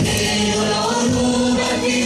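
Music: a choir of voices singing over a steady beat.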